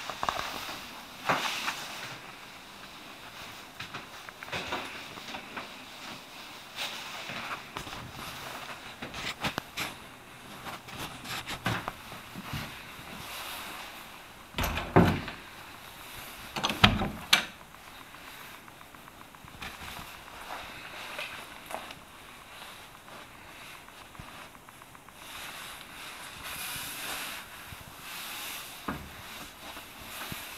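Handling noise and scattered knocks from someone moving through a room and working doors, with two louder thumps about halfway through.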